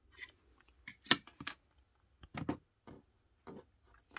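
Handling noise: a scattering of small, sharp clicks and taps from a plastic model building and tweezers being handled and set down on a cutting mat. The loudest click comes a little over a second in.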